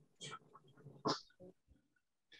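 Faint, short sounds from cattle grazing close to the camera: a few brief noises in the first second and a half, then near silence. They come from a field recording played back at low volume over a video call.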